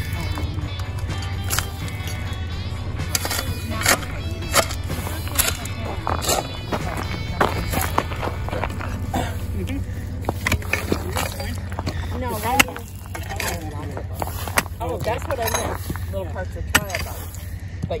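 Steel shovel digging into loose shale rubble: repeated scrapes and clinks of shale fragments, with voices in the background.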